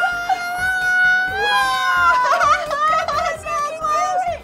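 A long, drawn-out high "whoa" held for about two seconds, then excited exclamations and laughter from people watching balls spiral down a funnel.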